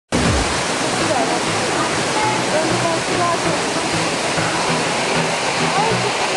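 Waterfall rushing, a loud steady wash of falling water, with a few faint gliding calls heard over it.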